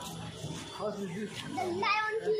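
Children talking and calling out, with a higher, rising voice near the end.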